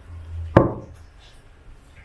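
A single sharp knock about half a second in: a tarot card being drawn and set down on the table.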